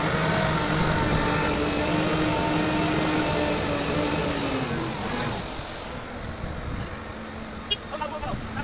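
Heavy diesel engine of the mobile crane revving up, holding a steady raised speed for about five seconds, then dropping back toward idle. A short click comes near the end.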